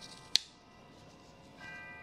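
A single sharp click about a third of a second in, over a quiet room with a faint steady high-pitched whine that grows slightly louder near the end.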